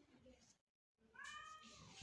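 A cat meowing once: a drawn-out, faint call that rises and then falls in pitch, starting about a second in.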